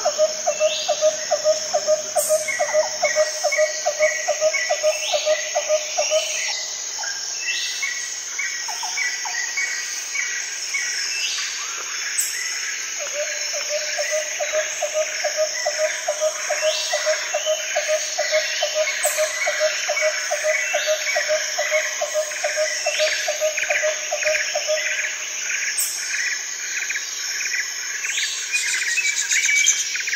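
Outdoor nature sound: a steady high-pitched insect chorus with birds calling over it, including repeated short chirps and brief rising notes. A low call of rapid, evenly spaced pulses runs for about six seconds at the start and again for about twelve seconds through the middle.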